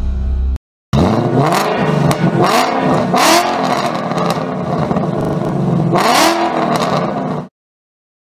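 Ford Mustang V8 engine revved in four sharp blips, settling back between them. The sound starts about a second in and cuts off suddenly near the end.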